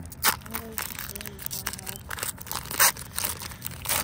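Foil wrapper of a 2007 Topps baseball card pack being crinkled and torn open, with irregular sharp crackles. The loudest come about a quarter second in and near three seconds in, as the hard-to-open pack is worked apart.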